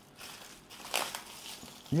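Clear plastic shrink-wrap rustling and crinkling as it is pulled off a frozen pizza, with a sharper crackle about a second in.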